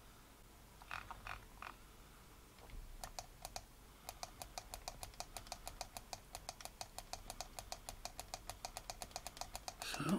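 Faint clicking of computer keys: a few separate clicks, then from about four seconds in a fast, even run of about six clicks a second.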